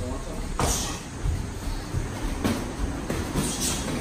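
Kickboxing sparring: a few sharp thuds of gloved punches and shin-guarded kicks landing, about half a second in and again near two and a half and three and a half seconds, with footsteps on the ring floor over a low steady rumble.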